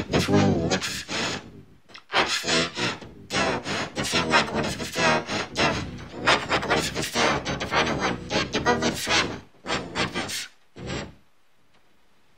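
A person's voice, vocalizing in long runs without clear words, stopping about eleven seconds in.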